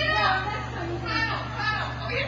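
People's voices, talking and calling, over a steady low hum.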